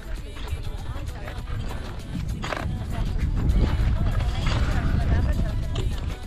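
Wind buffeting the camera microphone, with people's voices and a scatter of short knocks and clatter.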